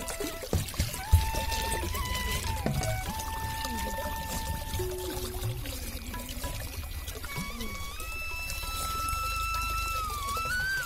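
Water running from a pipe into a plastic bottle as it fills, under background music with long held melodic notes.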